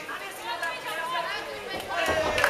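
Fight crowd shouting and chattering, several voices overlapping at once.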